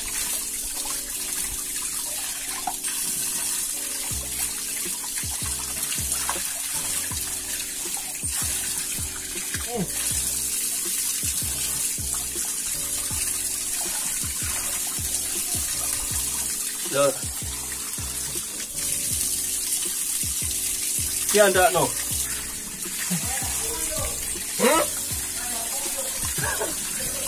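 Tap water running steadily into a concrete sink, splashing as hands and a cup go under the stream. Background music plays underneath, and a few short vocal sounds come near the end.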